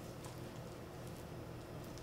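Quiet room with a steady low hum and a few faint, soft handling noises as kitchen twine is pulled and looped around a raw leg of lamb.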